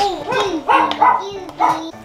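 A pet dog whining and barking in several short calls that rise and fall in pitch.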